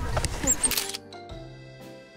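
Outdoor sound with voices for about the first second, a short click, then soft background music of mallet-like notes with gaps between them.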